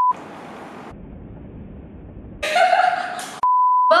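Editing sound effect of a TV test pattern: a steady high test-tone beep cuts off into a burst of TV static hiss, then a duller, lower rumbling hiss, a short glitchy burst, and a second brief test-tone beep near the end.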